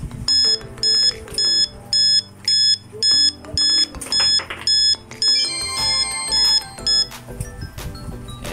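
Electronic buzzer of a piso wifi coin-operated vending machine beeping rapidly, about two high beeps a second, while it waits for a coin to be inserted. Near the end the beeps are joined by a busier run of tones as the coin is credited.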